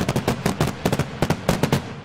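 Fireworks crackling: a rapid run of sharp bangs, about eight a second, that stops near the end and leaves a fading echo.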